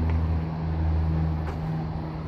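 A car engine idling steadily, a low even hum with a faint click about one and a half seconds in.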